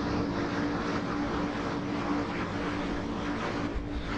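A steady mechanical drone with a constant low hum, holding level without rising or falling.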